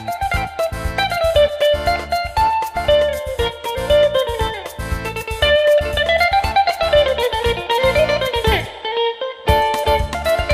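Greek bouzouki playing a fast picked instrumental melody that winds up and down. About eight and a half seconds in it slides down in pitch into a brief break, then the melody picks up again near the end.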